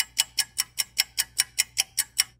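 Clock ticking, about five sharp, even ticks a second, starting and stopping abruptly like an edited-in sound effect.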